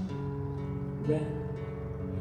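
Acoustic guitar played softly, its chords ringing on, with a new chord struck about a second in.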